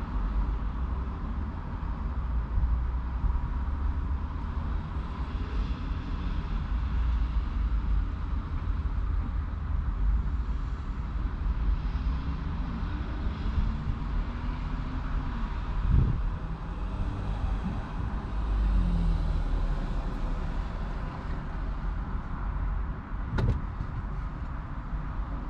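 Low, steady rumble of a parked vehicle's idling engine heard from inside the cabin, with a single knock about two-thirds of the way through and a sharp click near the end.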